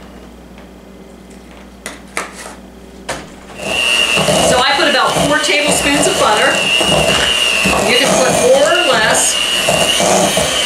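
A few light knocks, then about three and a half seconds in an electric hand mixer starts, its motor whining steadily as the beaters work mashed potatoes in a stainless steel bowl.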